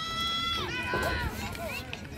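A spectator's high-pitched yell, held on one note and then falling in pitch just under a second in, followed by shorter shouts.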